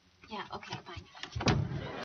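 Voices, then an apartment door shut with a loud thump about one and a half seconds in.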